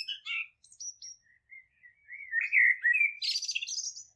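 Small bird chirping and singing: a few short chirps, then a louder warbling phrase from about two seconds in that ends in a quick run of higher notes.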